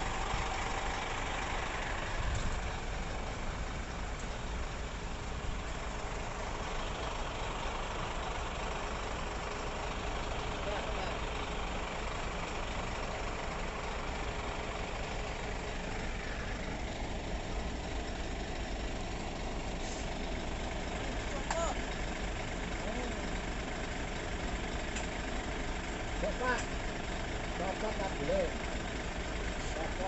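Heavy truck diesel engine idling steadily.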